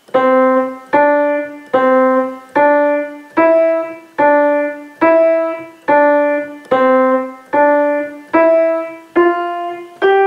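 Kawai grand piano played with both hands: a simple melody in the middle register, about a dozen evenly spaced notes struck to a steady beat, each ringing and fading before the next.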